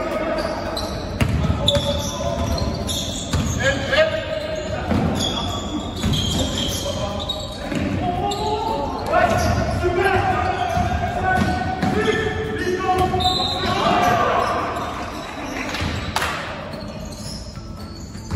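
A basketball bouncing on a hardwood gym floor during play, with players' voices calling out, echoing in a large sports hall.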